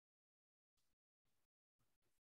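Near silence, broken by three very faint, brief bursts of hiss.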